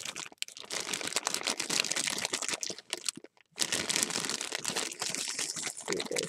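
Clear plastic bag crinkling as it is squeezed and turned in the hands around the wooden-block stamps inside, with a brief pause about three seconds in.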